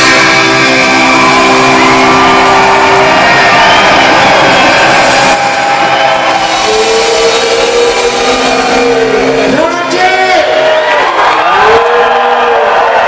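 Live band holding a final chord as a song ends, with the crowd cheering over it; shouting voices come in during the second half.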